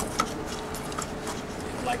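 Quiet handling: a few faint clicks and light knocks as a circular saw's base plate is set against a wooden straight edge, the saw not running.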